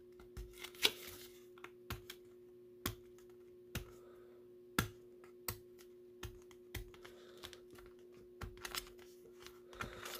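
Faint, irregular clicks and taps of fingers picking and prying at a stuck cardboard trading-card box, over a steady low hum.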